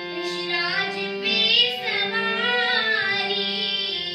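A young girl singing a melody, accompanying herself on a harmonium whose steady held notes sound beneath her voice.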